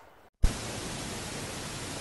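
Near silence, then a short click about half a second in, followed by a steady hiss: the background noise of a phone recording.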